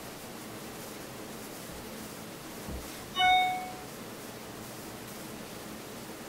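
A single short, bright ding about three seconds in: several clear ringing tones that fade within half a second, just after a soft thump. Otherwise quiet room tone.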